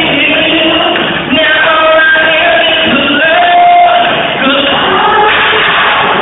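Live R&B band with a male lead singer, who holds long, sliding notes over guitars, keyboards and drums, heard from the audience in a large hall. The sound is dull and lacks treble.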